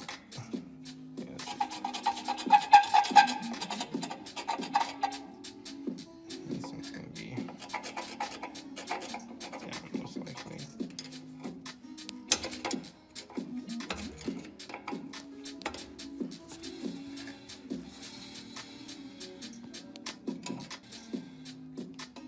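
Repeated scraping and sharp clicking of a screwdriver working the adjuster on a classic VW Beetle's front drum brake, with the wheel being turned by hand, over background music with a steady bass line.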